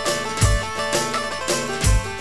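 Folk dance music from a band: held melodic notes over a deep drum that thumps twice, about half a second in and near the end.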